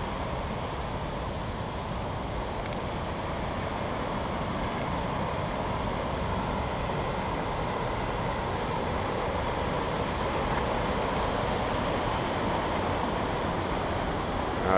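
Water rushing steadily over a low weir, a continuous even rush of falling water.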